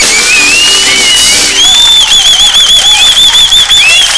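A studio house band's music dies away, overtaken by a loud, high whistle that glides up and down and then warbles rapidly for the last two seconds.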